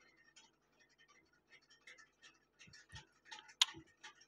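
Faint rustling and scattered light ticks and clicks of hands gathering and tucking saree pleats, denser in the second half, with one sharper click near the end.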